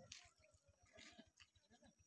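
Near silence, with a faint animal call in the background.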